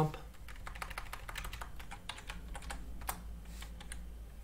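Typing on a computer keyboard: a quick run of key clicks, with one sharper click about three seconds in.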